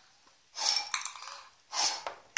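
Two hard blows of breath into a drinking glass, about a second apart, the first about half a second in, trying to pop a small plastic ball out of it; a light clink of the ball against the glass comes near the end of the first blow.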